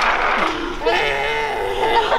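A high-pitched voice drawn out and wavering for about a second, heard over the hubbub of a busy room.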